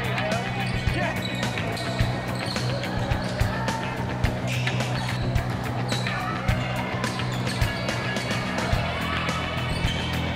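Basketball bouncing on a gym's hardwood floor during a game, in repeated irregular thumps, with music playing over it.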